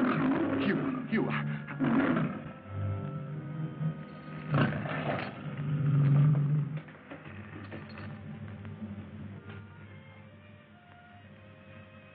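Lions roaring several times over film score music: a loud roar at the very start, more in the first two seconds, and another about four and a half seconds in, after which only the music goes on more quietly.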